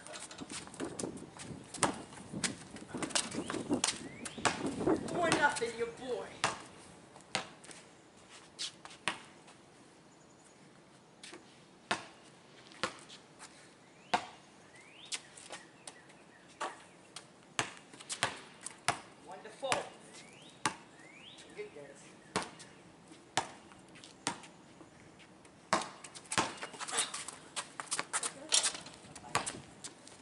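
A basketball dribbled and bounced on a concrete driveway during a game: a long, uneven run of sharp bounces, sometimes one or two a second and sometimes in quicker runs.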